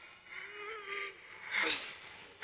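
A young girl's wordless whimpering, one wavering note, then a sharp noisy breath about a second and a half in, as she struggles against a hand holding her jaw.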